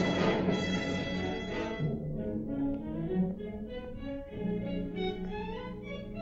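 Orchestral film score. The full orchestra plays loud for about the first two seconds, then drops to a quieter, thinner passage of held and shifting notes.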